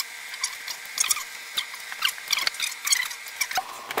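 Blankets and pillows being handled and arranged, an irregular rustling with short, scratchy crackles several times a second.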